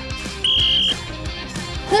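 A single short whistle blast from a coach's sports whistle: one steady high note about half a second long, over background music.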